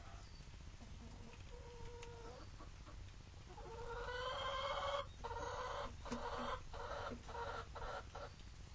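Domestic hen calling: a faint short call about two seconds in, then from about halfway a loud, drawn-out call that swells and goes on as a string of long notes with short breaks until the end.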